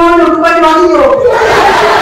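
A loud shout held on one pitch, which drops and breaks off about a second in, then the noise of a crowd of children's voices.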